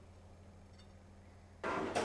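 Faint steady low hum, then near the end a sudden rattle as a kitchen drawer is pulled open and cutlery is handled in it.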